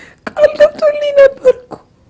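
A woman wailing tearfully in a high, held voice, broken into several short bursts on a slightly falling pitch.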